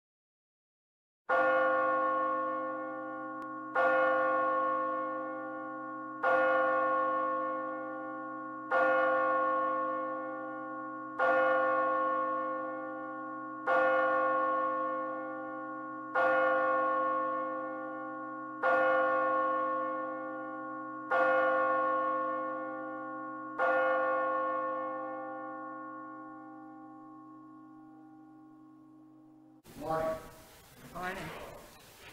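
A single church bell tolled ten times at the same pitch, about one strike every two and a half seconds. Each strike rings on into the next, and the last fades away slowly.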